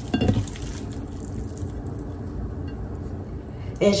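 A low, steady background hum with a few faint ticks, and no cooking sound such as sizzling.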